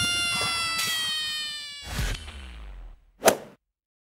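Cartoon sound effects: a ringing, clanging crash fades out slowly over the first three seconds, with a second thud about two seconds in. A short swish follows near the end.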